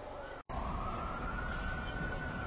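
A single wailing tone rises slowly and then begins to fall, over a low steady rumble. It starts after a brief dropout about half a second in.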